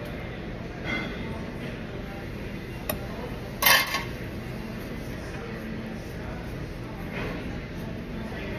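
Low background voices, with a single sharp click and then a brief loud clatter a little over three seconds in.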